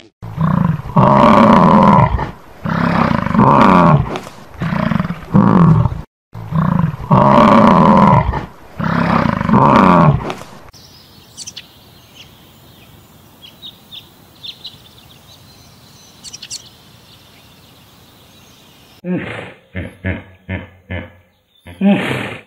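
Bison bellowing: a series of long, deep, rumbling bellows through the first ten seconds. Faint, short, high flamingo calls follow, and near the end a hippo grunts in a rapid run of pulses.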